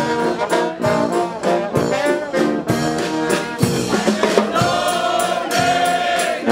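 A dweilorkest, a Dutch street brass band, playing live: trombones, trumpets, euphoniums and a sousaphone over a steady drum beat. Near the end the band holds one long note.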